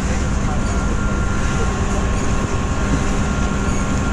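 A steady low rumble with a faint constant hum over it, running evenly without clear breaks.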